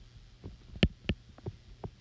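Stylus tapping on a tablet screen while handwriting: about five short clicks, the loudest just under a second in, over a steady low hum.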